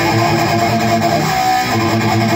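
Electric guitar played loud and heavily distorted through a cranked Marshall JCM800 valve amp and Marshall cabinet, boosted by a Way Huge Green Rhino overdrive: a continuous riff of sustained notes.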